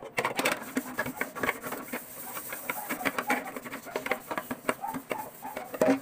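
Coins clinking and clicking against one another and a metal bowl as they are handled and counted, a quick, irregular run of small metallic ticks.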